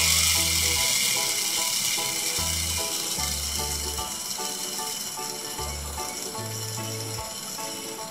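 Small DC gearmotor running with a high whir that fades steadily as it slows under reduced PWM drive. Background music with low, blocky notes plays throughout.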